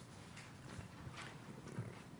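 Faint room tone in a pause of speech, with a few soft taps.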